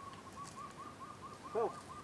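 A bird calling in a fast, even series of short whistled notes on one pitch, about seven a second.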